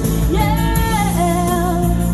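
A woman singing a held, wavering note into a microphone, stepping down in pitch a little over a second in, over instrumental backing music played through PA speakers.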